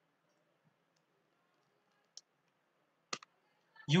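A single sharp click of a computer keyboard key about three seconds in, with a fainter click about a second before it, against quiet room tone. The sharp click is the Enter key entering the spreadsheet formula.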